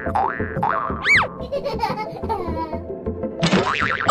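Cartoon comedy sound effects dubbed over background music: springy 'boing' glides that rise and fall in pitch, the clearest and loudest about a second in, with a noisy burst near the end.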